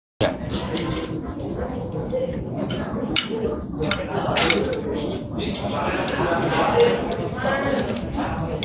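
Indistinct chatter of voices, with cutlery and dishes clinking now and then.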